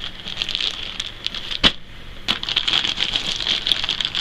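Clear plastic garment bag crinkling and crackling as it is handled, with one sharp click a little before the middle.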